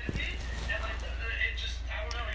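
Steady low hum with faint room noise, in a pause between voices.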